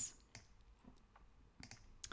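A few faint, scattered clicks from a computer mouse and keyboard.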